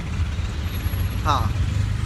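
Steady low rumble of an auto-rickshaw on the move, its engine and road noise heard from inside the cabin.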